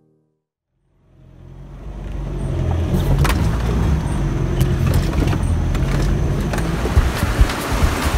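Inside a vehicle driving a rough off-road track: engine running under a steady road rumble, with scattered knocks and rattles as the vehicle jolts over bumps. It fades in about a second after a moment of silence.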